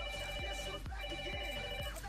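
A phone ringtone: an electronic ring of several steady tones, sounding twice, each ring just under a second long, left unanswered. Background music with a steady beat plays underneath.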